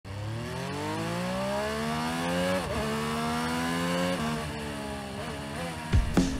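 Indian Super Chief Limited's air-cooled Thunderstroke 116 V-twin accelerating hard, its note rising through the gears with two upshifts, about two and a half and four seconds in, then running more evenly.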